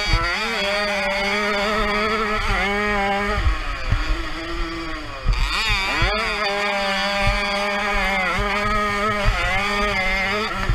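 Small Jawa 50 Pionýr two-stroke motorcycle engine revving hard under racing load, climbing in pitch, holding, then falling off for a moment about four seconds in before revving up sharply again about five seconds in.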